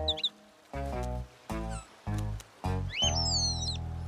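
Playful cartoon background music in a few short, separate notes over a bass line. Near the end a cartoon bird gives a chirpy call that slides up and down.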